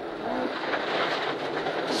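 Ford Escort Mk1 rally car at speed on a gravel stage, heard from inside the cabin: the engine running under load with stones and gravel clattering against the underside.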